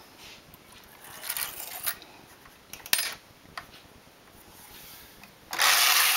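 A few faint clicks and small handling noises, then, about five and a half seconds in, a loud even rushing noise as the carriage of a domestic double-bed knitting machine is pushed across the metal needle bed, knitting a row.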